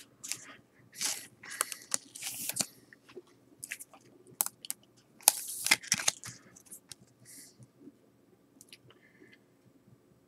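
A baseball card being handled and slid into a clear plastic card holder: scratchy plastic rustling in short bursts for about six seconds, then a few faint ticks.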